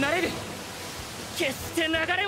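A voice shouting lines of Japanese anime dialogue, with a steady rushing noise between the lines.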